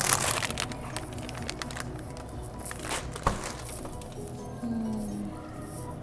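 Plastic bags of frozen fries crinkling as they are handled, mostly in the first second, over steady background music; a single sharp knock a little past halfway.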